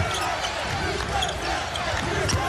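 Basketball arena crowd noise during live play, with a ball being dribbled on the hardwood court and scattered sneaker squeaks.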